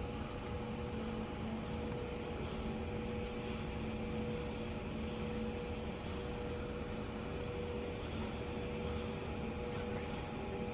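Steady mechanical hum and hiss of hospital room equipment and ventilation, with a few faint steady tones running through it.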